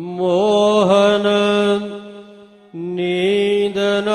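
A single voice chanting Gurbani in slow, melodic recitation, holding long notes with small pitch turns. It drops away briefly a little past the middle and then comes back in.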